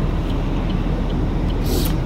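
Steady low rumble of a car's engine and road noise heard from inside the cabin, with a short hiss near the end.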